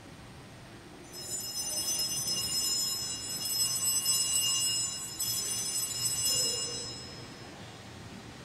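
Altar bells (Sanctus bells), a cluster of small bells, shaken repeatedly. They start about a second in and fade out near the end. The ringing marks the elevation of the consecrated chalice.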